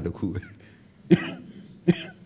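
A man coughs twice, two short, sharp coughs under a second apart, in a pause in his speech.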